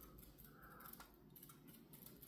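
Near silence: room tone, with a faint click about a second in.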